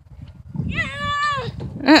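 A toddler's single high-pitched vocal call, under a second long, starting about a second in, rising and then falling in pitch. Near the end an adult woman's lower voice says "Uh-oh!", over a low rumbling noise.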